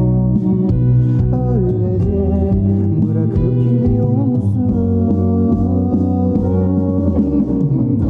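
Turkish pop song with guitar and bass and some sung vocal, muffled as if playing in a bar beyond a bathroom wall.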